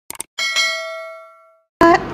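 Two quick click sound effects, then a single bright bell chime that rings out and fades over about a second: a subscribe-button and notification-bell sound effect.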